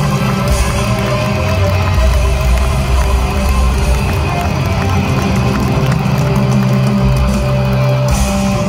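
Rock band playing live: electric guitars, keyboards and drums through a concert PA, recorded from among the audience.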